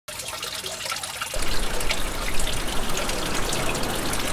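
Water running from a tap and splashing down into a well basin, growing louder about a second and a half in.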